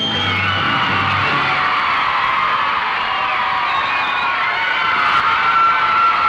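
A 1960s rock band's song ends in the first second or two, and a studio audience of screaming, cheering fans carries on through the rest.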